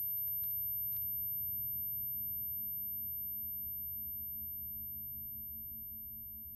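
A low, steady drone on the film's soundtrack, slowly fading away, with a few faint clicks in the first second.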